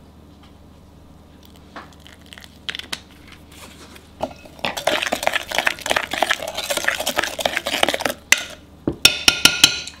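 A metal spoon stirs thin batter in a glass mixing bowl, scraping and clicking against the glass for several seconds. Near the end come a few sharp, ringing clinks of the spoon on the glass.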